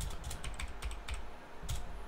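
Typing on a computer keyboard: an irregular run of keystroke clicks.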